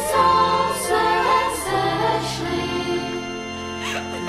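A Christmas carol sung by several voices together, with long held notes in the second half.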